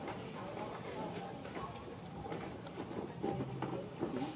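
Distant people's voices, with scattered light clicks and a few short, high chirps.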